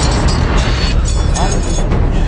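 Action-film soundtrack: loud music score mixed with fight sound effects, with a sharp hit right at the start.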